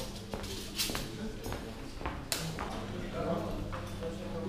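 Indistinct background chatter in a changing room, with scattered sharp clicks and knocks, the loudest about a second in and again a little after two seconds.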